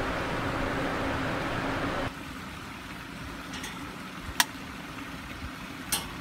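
Steady background hiss and low hum that drops abruptly to a quieter hiss about two seconds in. Two short clicks come near the end.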